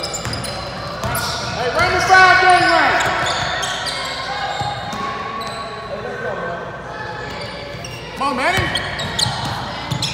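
A basketball being dribbled on a hardwood gym floor during a game, its bounces echoing in the hall. Players or spectators shout twice, about two seconds in and again near the end.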